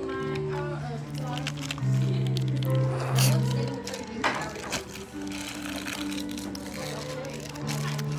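A group of people singing together, holding long steady notes that change pitch in steps, with some talking mixed in.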